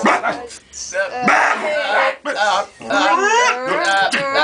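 Several voices in an improvised vocal chorus, overlapping in short yelps and calls that slide up and down in pitch, with brief gaps between bursts.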